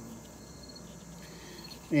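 Crickets chirping faintly and steadily in the background, a thin high trill.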